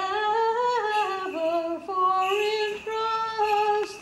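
A woman's voice singing a slow Greek Orthodox hymn melody, holding notes that step up and down.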